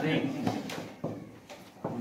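A man's voice trailing off, then a few short knocks and scrapes of a marker writing on a whiteboard.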